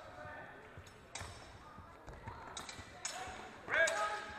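Steel training longswords striking and clashing several times, each hit leaving a short metallic ring, with the hardest clash near the end. Short voices or shouts come between the hits.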